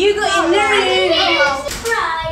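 A child's high-pitched voice calling out or chanting playfully in drawn-out tones, without clear words, with a short sharp knock near the end.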